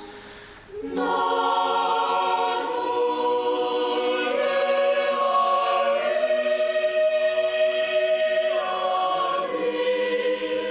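Choir singing slow, sustained chords. The voices come back in after a short break about a second in, then move from one held chord to the next.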